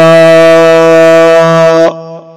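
A man's voice holding one long, steady sung note in devotional Arabic chanting, after a short wavering phrase. The note breaks off near the end and an echo dies away.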